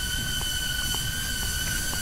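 Hover X1 camera drone flying close by in follow mode: a steady high-pitched propeller whine that holds one pitch, over a low rumble.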